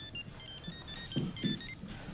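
A phone ringing with a melodic ringtone: a quick tune of short, high electronic beeps that stops a little before the end, as the call is picked up. A few soft low thuds are heard in the middle.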